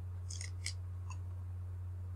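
A few short, faint scratches and ticks of a stylus on a tablet screen, over a steady low electrical hum.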